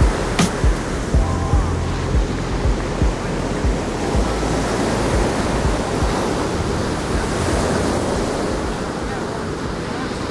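Ocean surf breaking and whitewater washing over a sandy shore in a steady rush, with background music underneath.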